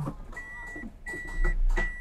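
A car's electronic warning beeper sounding a steady high tone in repeated half-second beeps, about three every two seconds, with a low rumble and a couple of handling knocks.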